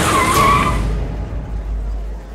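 A bus's tyres screeching in a short hard skid as it brakes: a high squeal lasting under a second, followed by a low rumble that dies away.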